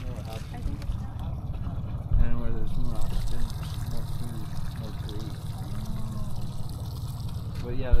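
Low, indistinct talk among people on a boat deck over the steady low rumble of the trolling boat and water moving against the hull.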